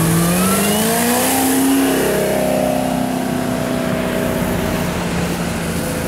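Chevrolet Camaro ZL1's supercharged V8 accelerating hard, its note rising in pitch for about two seconds. The note then levels off and holds steady as the car pulls away.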